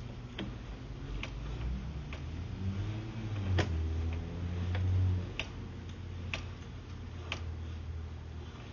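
Sewer inspection camera being reeled back through the line: a sharp tick about once a second over a low hum, which swells to its loudest about four to five seconds in.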